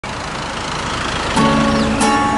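Steady rush of road traffic, then an acoustic guitar chord strummed once about a second and a half in, left ringing.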